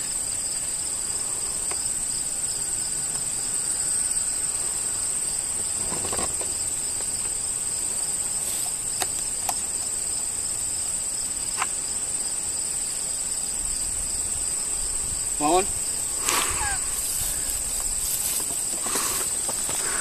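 Steady high-pitched chorus of field insects trilling without pause, a weaker pulsing trill beneath the main one, with a few faint words of talk near the end.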